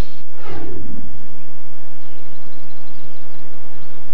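A pitched sound effect gliding down steeply over about a second, ending the title sting's music, then a low steady hiss.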